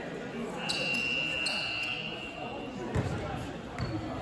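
A basketball bouncing on a sports-hall floor: one clear thud about three seconds in and a lighter one near the end, echoing in the large hall. Voices murmur in the background, and a faint steady high-pitched tone runs for about two seconds near the start.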